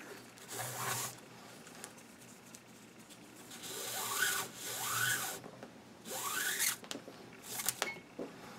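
Paracord pulled through a tight weave wrapped on a Type 81M underfolder stock, with a rasping, zipper-like rub. There are four separate pulls, each rising in pitch as the cord runs through, then a few light clicks near the end.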